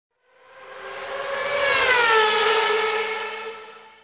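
Intro logo sound effect: a pitched whoosh with several tones that swells up over about two seconds, drops in pitch at its peak, and fades away near the end.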